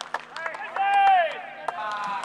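Baseball players on the bench clapping and shouting: scattered handclaps, then a long shouted call about a second in that drops in pitch at its end, and another shout near the end.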